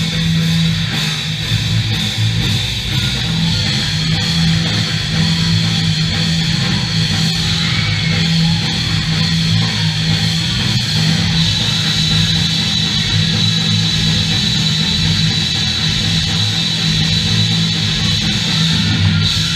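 A pop-punk rock band playing a song live at full volume: electric guitars, bass and drums, heard across a large hall.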